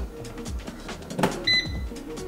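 A digital air fryer gives one short electronic beep about one and a half seconds in as it powers on after being plugged in. A knock comes just before the beep, over background music with a steady beat.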